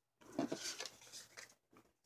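Faint handling noises: a paper index card being picked up and moved over the work board, a few short rustles and scrapes within the first second and a half.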